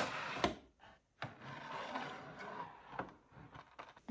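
Small clear plastic storage drawers being handled: a couple of sharp knocks as one drawer is pushed home, then a soft sliding rub as the next is drawn out, with a few light knocks near the end.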